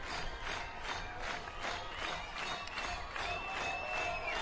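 Concert crowd cheering and clapping in a steady rhythm, about three to four claps a second, with voices calling out over it.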